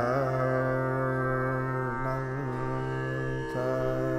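Male dhrupad voice holding long, slowly wavering notes over a steady tanpura drone, with a break and a fresh phrase beginning about three and a half seconds in.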